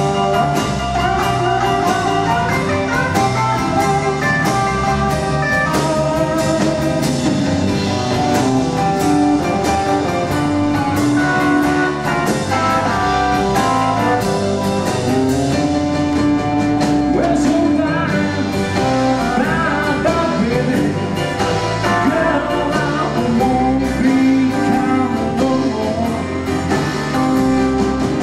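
A live rock and roll band plays an instrumental passage on piano, electric bass, guitar and drum kit, with a steady beat of drum strikes throughout.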